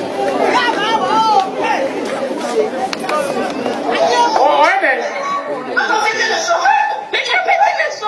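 Several voices talking over one another, with a man speaking into a microphone among them.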